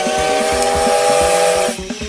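Steam locomotive whistle: one chord of several tones held for about two seconds with a hiss of steam, cutting off near the end, over background music.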